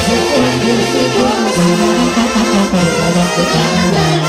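Live Sinaloan banda music: trumpets and trombones play a brass passage over a low tuba bass line that steps from note to note.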